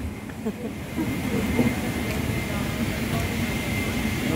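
Steady low rumble of an airliner cabin's ventilation while boarding, with a thin steady high whine joining about a second in and a faint murmur of passengers' voices.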